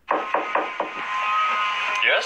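Four quick knocks on a wooden door, followed by a steady hum with a faint tone.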